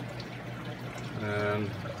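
Aquarium water trickling and splashing from the filter return into the tank, over a steady low hum.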